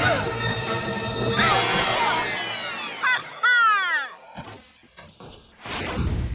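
Cartoon soundtrack: music, then a whooshing crash effect and a series of falling glides in pitch, ending in a few short thuds of a landing.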